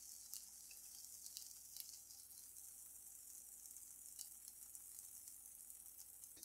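Faint sizzling of beans, onion and garlic frying in a little olive oil in a nonstick frying pan, with a few faint clicks.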